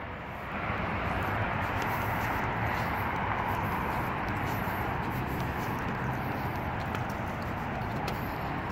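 Steady outdoor background hiss and hum with a few faint, scattered clicks.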